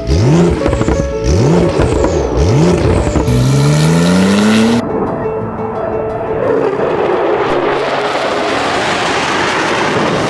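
Porsche 911 flat-six engine revving, its pitch rising and falling several times, then climbing steadily in one long pull. For about the second half a loud rushing noise takes over.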